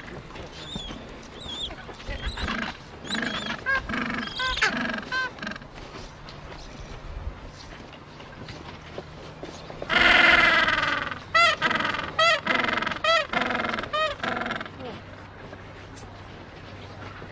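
Gentoo penguins braying. Harsh calls come about two to five seconds in; about ten seconds in there is a loud, long bray followed by a run of short, rapidly repeated honks. This is the gentoo's ecstatic display call, given with the head and bill thrown straight up.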